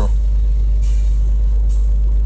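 A steady low rumble inside a car's cabin, with a faint soft hiss about a second in.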